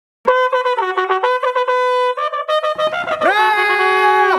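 Bugle call: a quick run of short notes stepping between a few pitches, then a long held note from about three seconds in.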